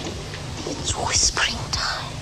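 A woman whispering, with sharp hissing 's' sounds about a second in, over a steady low hum.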